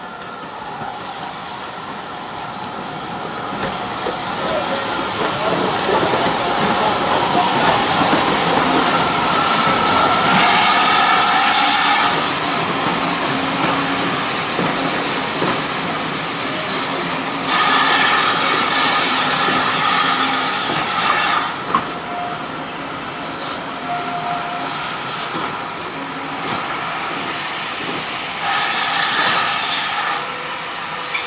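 Steam locomotive hauling a train of passenger coaches past, the rail noise building as it comes close. Wheels click over the rail joints as the carriages roll by, with three bursts of steam hissing, at about ten seconds, about eighteen seconds and near the end.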